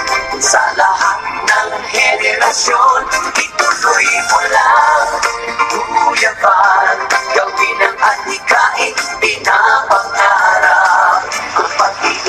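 Dance music with a sung lead vocal over a steady beat; the long held notes waver in pitch.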